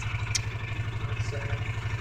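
Off-road vehicle engine running at low speed, a steady low throbbing pulse as it creeps along.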